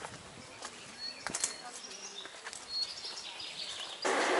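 Quiet forest ambience with a few faint, short, high bird chirps and a couple of soft clicks about a second and a half in.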